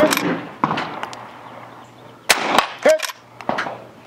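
Reproduction Winchester 1866 lever-action carbine firing: one shot right at the start, then a quick run of two or three shots about two and a half seconds in.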